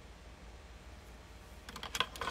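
Steady low room hum, then near the end a quick run of several sharp clicks and taps.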